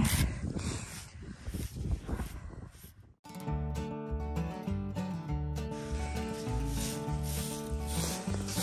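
A coiled curry comb scrubbing through a foal's thick, mud-caked winter coat, a rough rubbing scratch, for about three seconds. Then the sound cuts off and background music with a steady repeating bass line takes over.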